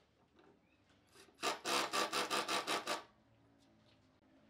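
Cordless Makita impact driver driving a screw into a wooden slat: a loud hammering rattle that starts about a second and a half in, pulses in level, and stops after about a second and a half.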